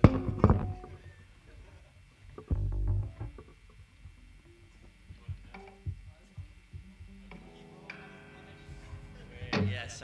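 Band instruments being played loosely, not a song: a few sharp drum hits at the start, a low thud a couple of seconds in, and scattered small knocks. From about seven seconds in, an electric guitar chord rings out and holds.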